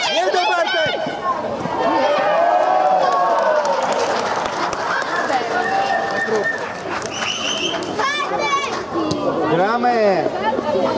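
Overlapping shouts and calls of children and spectators during a youth football match, with no clear words, in a large air-dome sports hall.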